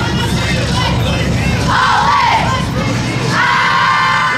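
A squad of cheerleaders huddled together shouting a team chant in unison, which breaks into a long, loud group shout near the end. Music with a pulsing bass beat plays underneath for most of it.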